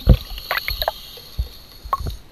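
Underwater sound beside a scuba diver: a low thump right at the start, then scattered short gurgles and light knocks.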